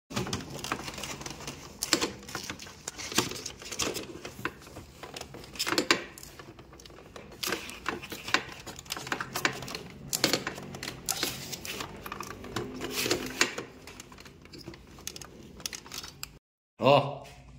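Irregular plastic clicks, knocks and rustling as hands press foam-insulated pipes into the plastic pipe holder on the back of a split-type air conditioner's indoor unit.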